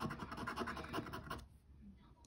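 A coin scraping the scratch-off coating from a paper lottery ticket in a quick run of short strokes, stopping about a second and a half in.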